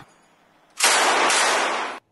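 A burst of machine-gun fire lasting about a second, starting almost a second in and cut off abruptly.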